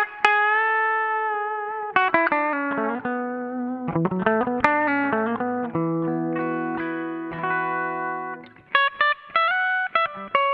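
Epiphone SG Special electric guitar played clean through an amplifier, its humbucker pickups demonstrated with quick picked runs of single notes alternating with notes and chords left to ring. The playing drops away briefly near the end before picked notes start again.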